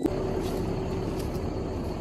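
Dump truck's engine idling, a steady low rumble with a faint even hum.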